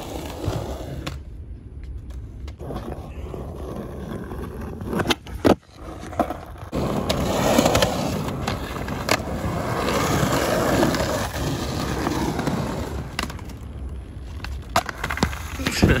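Skateboard wheels rolling on rough concrete, with sharp wooden clacks of the board snapping against the ground about five seconds in and again near the end.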